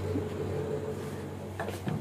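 Low steady electrical hum from a kitchen appliance, with a couple of faint clicks or knocks near the end.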